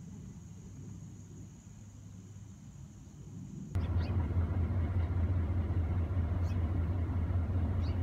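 Steady, loud low rumble of a running vehicle engine that starts abruptly about four seconds in, with only a faint low hum before it.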